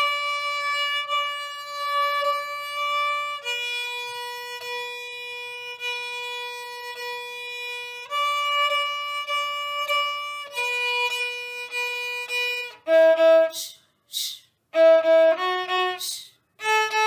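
A violin played with the bow: long sustained notes, each held for two to four seconds, alternating between a higher pitch and one a little lower. Near the end come short, separated notes with brief gaps between them.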